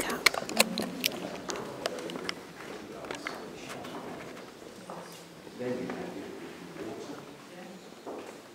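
Indistinct chatter of people in a large room, too faint to make out words. A quick run of sharp clicks and knocks comes in the first two seconds or so.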